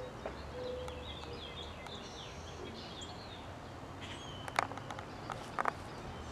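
Outdoor ambience with several small birds chirping in quick, high runs of notes, then a few sharp clicks near the end.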